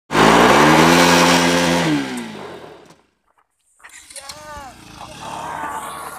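Bajaj Pulsar NS200's single-cylinder engine held at high, steady revs as the rear wheel spins in the dirt, loud, then dropping in pitch about two seconds in and fading out. After a short break, quieter sound with rising and falling pitch returns.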